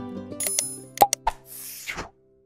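Background music fading out, with a few sharp pop and click sound effects from a subscribe-button animation about a second in, then a short whoosh near the end before the sound cuts off.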